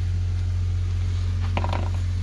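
Steel pipe nozzle with a threaded coupling clinking and scraping against the gasifier tank's metal port as it is put into place, a short metallic rattle about a second and a half in. A steady low hum runs underneath.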